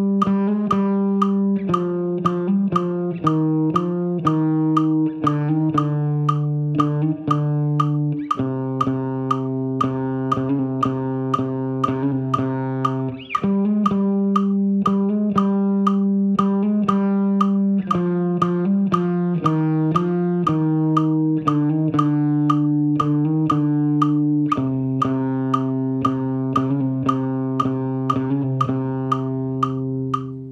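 Electric guitar playing a fast repeating riff of picked notes with hammer-ons on the A string, the phrase stepping between a few pitches every several seconds.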